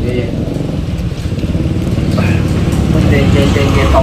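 People talking over a steady low rumble; the voices come in about halfway through.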